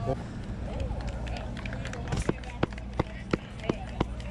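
Footsteps on pavement: sharp, evenly spaced steps about three a second, starting about two seconds in, over a low steady rumble.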